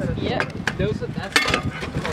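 Voices of people talking around the bucket, with one sharp knock a little past halfway.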